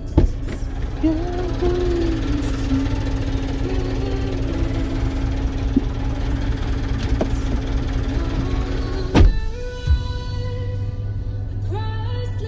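Music playing over a steady low rumble, with a sharp knock about nine seconds in.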